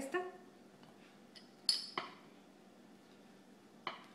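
Small plastic rolling pin clicking and knocking against a granite countertop as gum paste is rolled out: a sharp click a little under two seconds in, a softer knock just after, and a faint tick near the end.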